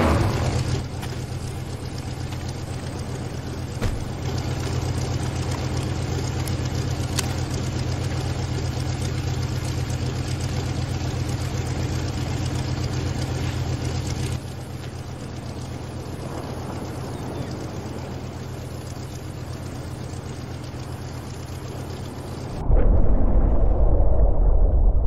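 Chevrolet 327 V8 idling steadily with a low, even hum; a little past halfway it drops slightly quieter. Near the end it gives way to a louder, deep muffled rumble with the treble gone.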